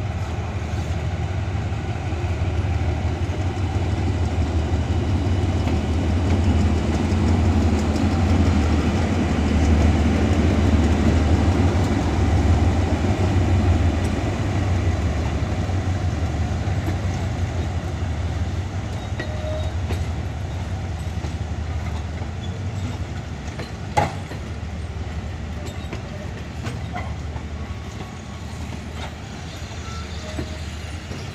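HID-class diesel-electric locomotive pulling a passenger train away from the station. The low engine drone builds as it comes past, peaks around the middle, then fades as the coaches roll by with their wheels clicking over the points. One sharp clank comes about two-thirds of the way through.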